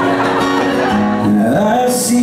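A man singing, accompanied by his own strummed acoustic guitar, in a live solo performance.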